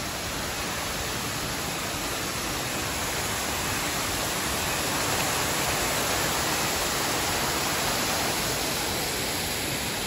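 Waterfall of many strands of water falling down a rock face into a pool: a steady rush of water, swelling a little in the middle.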